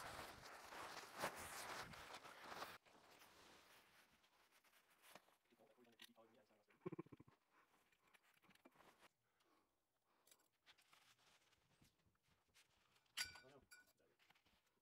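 Near silence: faint noise for the first few seconds, then almost nothing but a brief faint voice partway through and a single click near the end.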